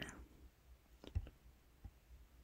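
A few faint computer mouse clicks: a couple about a second in and one near the end, with faint hiss between.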